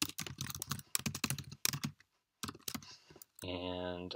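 Typing on a computer keyboard: a quick run of keystrokes, a short pause about two seconds in, then a few more keys. Near the end a drawn-out spoken "uh".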